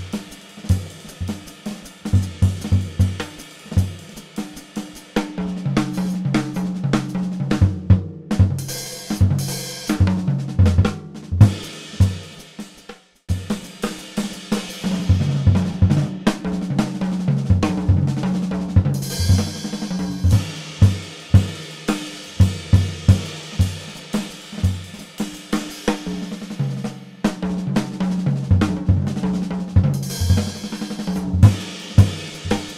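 Jazz drum kit played with sticks at a very fast tempo: rapid snare and tom figures stepping down in pitch, with ride cymbal and hi-hat. The playing stops briefly about thirteen seconds in, then starts again a tempo at about 360 beats per minute.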